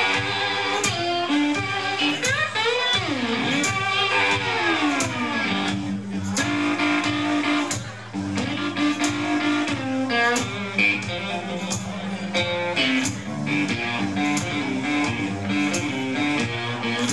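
Live blues band playing an instrumental passage: electric guitars, bass and drums over a steady beat. A few seconds in, the lead guitar plays long bent, sliding notes.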